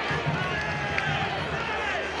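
Stadium crowd noise, a mass of voices going on steadily, with one sharp knock about a second in.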